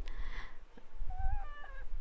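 A pause in speech, with a faint, brief, wavering high-pitched call in the background about a second in, lasting under a second.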